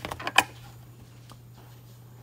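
A few quick clicks and knocks close to the microphone, the loudest just under half a second in, then only a steady low hum.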